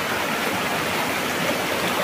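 Shallow rocky river running over and between boulders in small cascades: a steady rush of water.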